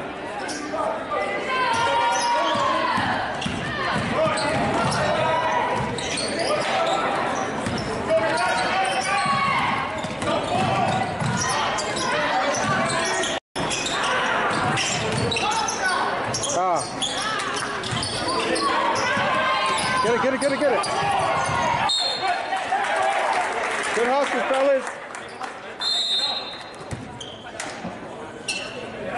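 Basketball game sound in an echoing gymnasium: many voices from players and crowd, with a basketball bouncing on the hardwood floor. The sound cuts out briefly about halfway through.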